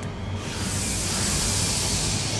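A rushing, hiss-like noise effect comes in about half a second in and holds, over a low steady music drone.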